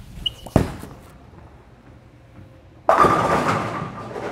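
A bowling shot: the ball drops onto the lane with a sharp thud about half a second in and rolls quietly, then crashes into the pins nearly three seconds in, the clatter dying away slowly. The hit carries pins but leaves the 4 pin standing.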